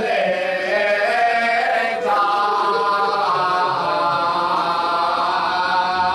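A man chanting an Urdu salam, a devotional poem, unaccompanied in a melodic voice. About two seconds in he settles into one long held line that wavers in pitch.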